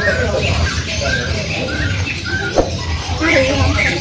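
Caged birds chirping in short, repeated notes, about two a second, over background voices. A single sharp click comes a little after halfway.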